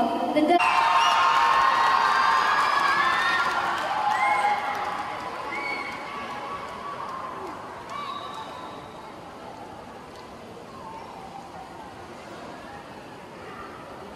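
A crowd of young people cheering and shouting, many voices at once, loud at first and fading away after about four or five seconds to a low murmur.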